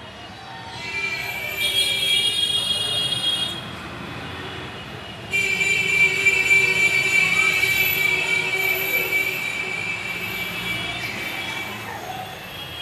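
A loud, steady, high-pitched squeal that holds one pitch. It comes in two stretches: a short one of about three seconds, then a longer one of about six seconds that fades near the end.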